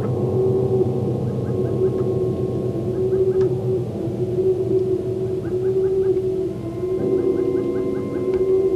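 Ambient electronic music: sustained synthesizer drones over a low hum, with short high chirping figures in quick groups of three to five recurring every second or two. A new lower tone enters near the end.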